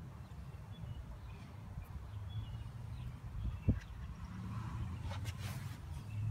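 Outdoor background: a steady low rumble with a few faint bird chirps, and a single sharp knock a little past the middle.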